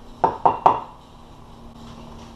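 A kitchen knife making three quick taps in about half a second, then only low room hum.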